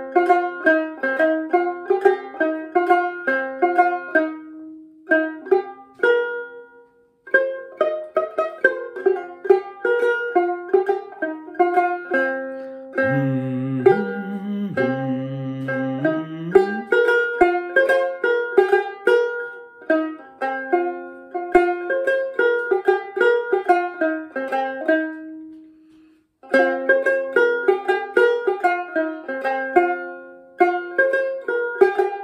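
Dramyin, the Himalayan long-necked lute, plucked in a quick melody of short, bright notes that stops briefly twice. For about three seconds halfway through, a low voice sings along.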